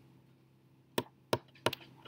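Three sharp clicks about a third of a second apart, over a faint steady low hum.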